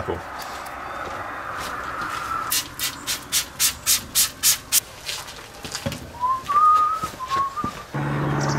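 Hand trigger spray bottle pumped about ten times in quick succession, roughly four hissing sprays a second, misting wheel cleaner onto a car wheel. A short wavering whistle follows near the end.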